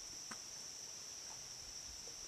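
Crickets trilling steadily at night, one continuous high-pitched tone, faint under a low background hiss.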